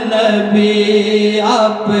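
Man chanting an Urdu naat (devotional poem) through a microphone, drawing out long wavering notes between the words, over a steady low hum.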